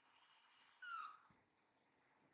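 A baby monkey gives one short, high squeak that falls slightly in pitch about a second in; otherwise near quiet.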